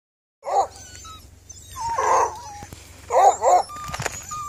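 Hounds (beagle and coonhound-cross puppies with their mothers) barking in short calls: one about half a second in, a longer one around two seconds, and two quick barks near the end, with faint high whines in between.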